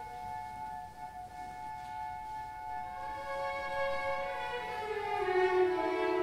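A soft passage of classical orchestral music, with bowed strings holding long notes. From about four seconds in, a line falls in pitch and the music grows louder.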